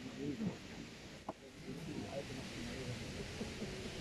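Faint murmur of people's voices in the open air, with one short click a little over a second in.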